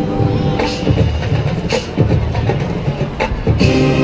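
Marching band playing: the held chords drop away for a run of loud, irregular percussion hits, and a sustained chord comes back in near the end.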